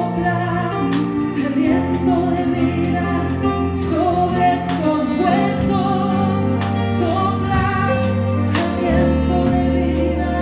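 Live Christian worship band playing, with a singer over electric guitar, keyboard, drum kit and percussion. Held low notes sit under the voice, and drum and cymbal strikes come at a steady beat.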